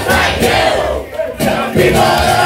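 Male and female voices shouting a sung line together over a strummed acoustic guitar in a live folk punk set, with a short drop in loudness about a second in.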